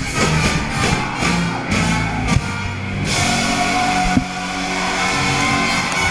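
Heavy rock music with guitar and drum kit: the drums hit hard through the first few seconds, then about three seconds in the sound thickens into a denser, sustained wall.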